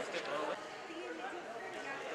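Faint, indistinct chatter of people talking in a sports hall, with a few light knocks in the first half-second.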